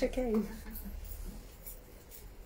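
A woman's voice briefly in the first half second, with a falling pitch, then quiet room tone with a low steady hum.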